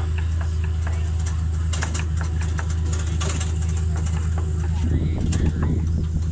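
Tractor engine running at a steady low drone while it tows a wooden passenger wagon, with scattered clicks and rattles from the wagon. The sound grows rougher about five seconds in.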